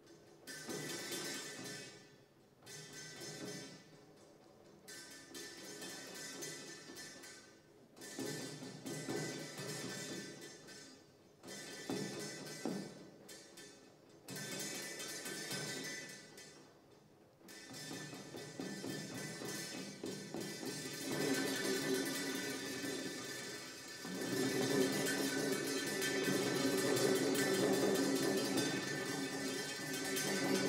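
Metal dish resting on a snare drum head, set vibrating by hand so that the dish and drum ring together with many steady tones. The sound comes in short phrases broken by pauses, then turns continuous after about 18 seconds and grows louder, with a further rise about 24 seconds in.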